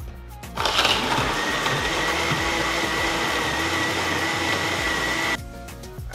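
Countertop blender grinding soaked rice and cinnamon stick pieces in water. It starts about half a second in, runs at a steady speed with a high whine over the grinding noise, and cuts off suddenly near the end.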